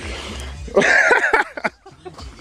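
A person's voice, loud and wavering for about half a second in the middle, in the manner of a laugh or shout.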